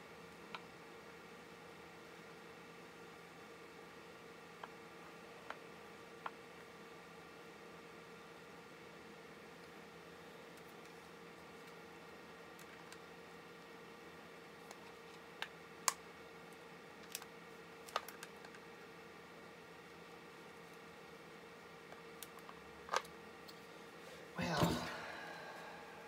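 Faint steady hum with a constant tone, broken by scattered sharp clicks and small knocks, a cluster of louder ones in the middle and a few more near the end.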